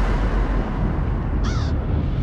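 A raven's single harsh caw, about one and a half seconds in, over a deep low rumble.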